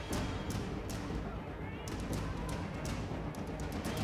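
Soccer stadium ambience: a low steady rumble with scattered sharp knocks and thumps at irregular spacing.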